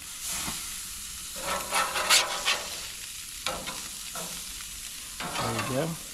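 Sea bass fillets sizzling on hot gas-grill grates, a steady high hiss, with a metal spatula scraping under the fillets as they are flipped about two seconds in.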